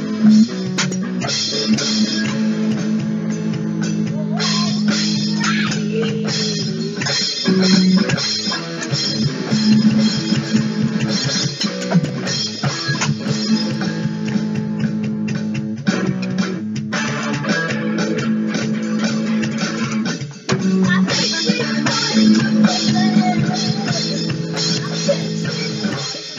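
Instrumental rock music: electric guitar with bass and drums playing a steady full-band passage with no vocals, dropping out for a moment a few seconds before the end.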